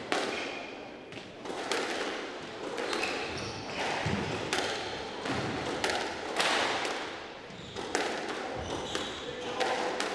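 A squash ball repeatedly struck with a racket and hitting the walls as one player knocks up alone: irregular sharp impacts, a few a second, echoing in the court.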